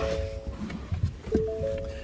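Ford F-150 cab warning chime sounding twice, each time a short chord of three steady stacked tones, as the driver's door is opened with the truck left running.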